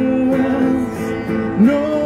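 A woman singing into a microphone while strumming an acoustic guitar. She holds one long note that ends about a second in, then slides up into a new note near the end.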